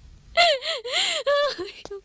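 A woman crying out in a high, wavering voice for about a second, starting a little after the beginning, with a short catch of breath near the end.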